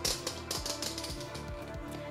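Light, irregular plastic clicks and taps from handling a Nicer Dicer Chef adjustable mandoline slicer, over quiet background music.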